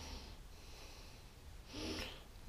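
Faint breathing of a man close to the microphone: one breath right at the start and another near the end.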